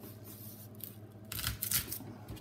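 A blunt chef's knife cutting into a whole onion through its dry papery skin: a short, crisp, scratchy crackle of under a second, starting more than halfway in.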